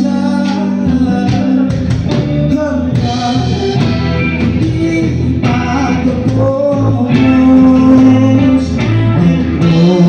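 Live band playing: electric guitars, electric bass and drum kit, with a man singing into a microphone. The music is loud and continuous, swelling a little louder about seven seconds in.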